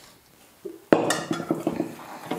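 Quiet at first, then about a second in a sharp knock followed by ringing clinks and small rattles of a stainless steel mixing bowl and spoon being handled.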